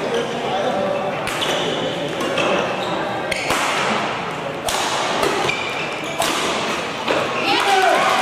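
Badminton rally: racket strings striking the shuttlecock about every one to two seconds, with court shoes squeaking on the mat, over the chatter of spectators.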